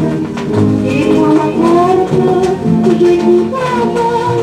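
A 1938 French 78 rpm shellac record playing on a turntable: an orchestral passage without words, a melody over a steady beat.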